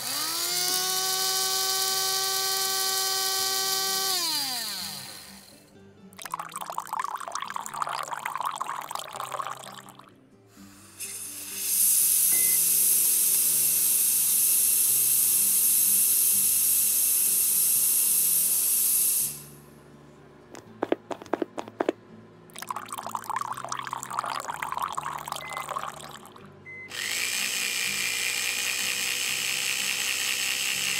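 Coffee-shop drink-making sound effects over soft background music. A blender motor spins up, runs for about four seconds and winds down. Stretches of rattling noise come next, then a loud steam hiss lasting about seven seconds, a few sharp clicks, and another hiss near the end.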